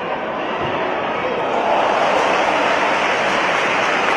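Stadium crowd noise from a football match, a dense roar of many voices that swells about a second and a half in and stays loud.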